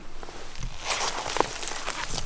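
Rustling and crackling of leafy brush and dry leaves as a person moves in close against a tree trunk, growing louder about half a second in.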